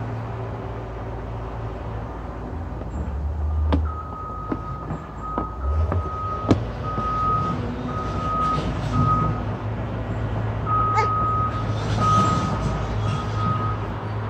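Vehicle reversing alarm beeping, one steady tone repeated roughly every 0.7 seconds, starting about four seconds in with a short pause in the middle, over a low engine rumble. Two sharp knocks sound about four and six and a half seconds in.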